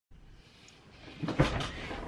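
A person settling into a desk chair, with a low thump and a few short knocks and rustles about a second and a half in.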